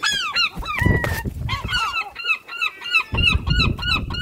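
Herring gulls calling: a few loud, arched yelping calls, then a rapid run of short calls at about five a second from about a second and a half in.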